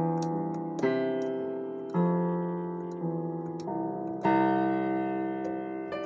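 Slow improvised piano playing: chords struck about once a second, each ringing out and fading before the next.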